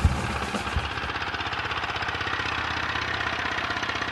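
An engine running steadily, with a fast, even pulse.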